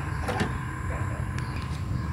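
A plastic automotive wiring connector being worked loose and pulled apart by hand, giving a few faint clicks and rustles over a steady low background rumble.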